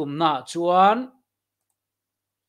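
A man speaking Mizo into a close microphone for about a second, then dead silence.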